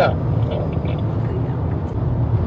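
Steady low drone of engine and road noise heard inside the cab of a 2002 camper van cruising up a freeway grade.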